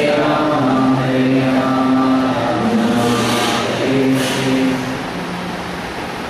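Sanskrit devotional prayers chanted slowly on long held notes, phrase after phrase with brief breaks between them.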